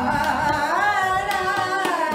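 A woman singing a long held note in Indian classical style, her voice sliding up to a higher pitch a little under a second in and holding there, with a few light tabla strokes underneath.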